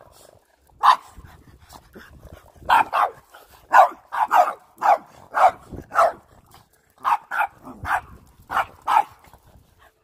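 Dogs barking at a push broom: about fourteen short, sharp barks starting about a second in, irregularly spaced and sometimes in quick pairs, the agitated barking of dogs that hate the broom.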